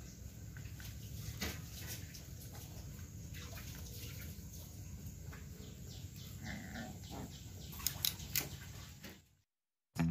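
Two Phu Quoc ridgeback puppies play-fighting on concrete: faint scuffling and scratching of paws and claws over a low steady hum, with a short puppy vocal sound about six and a half seconds in and a few sharper clicks near eight seconds. The sound cuts off shortly before the end.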